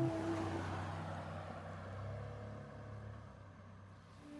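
A low, steady rumble under a soft hiss, gradually fading away.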